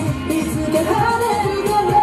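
Upbeat J-pop song with vocals, a sung melody line with held notes over a steady beat, from a boy-band street performance.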